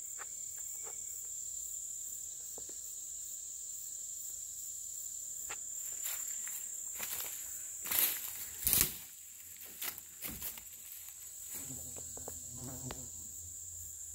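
Insects chirping in a steady high-pitched chorus, with rustling and crackling of dry vines and brush underfoot; two louder crackles come about eight seconds in.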